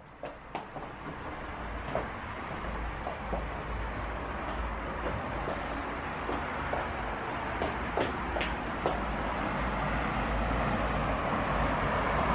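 Steady noise of road traffic from the street below, growing slowly louder, with a few light clicks and knocks.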